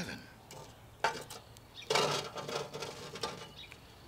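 Metal tongs lifting charcoal briquettes and setting them on the lid of an 8-inch cast-iron Dutch oven. There is a short clink about a second in and a louder, longer scraping clatter around two seconds in.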